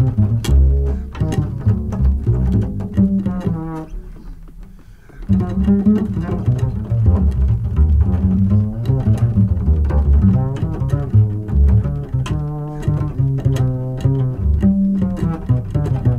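Jazz piano trio music with a plucked double bass to the fore. The music thins out into a quieter lull about four to five seconds in, then picks up again.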